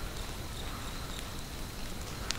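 Night insects trilling steadily in a pine woodland: a thin, high, continuous tone over a faint even hiss, with a few faint ticks.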